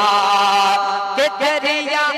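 A singer holds one long note in a devotional song about Imam Hussain, then moves into the next phrase with bending pitch a little over a second in.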